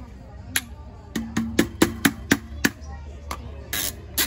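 Quick sharp metal taps at a BMX wheel's hub, about four a second, as an axle bushing is knocked into place, with a low steady ring under the middle taps.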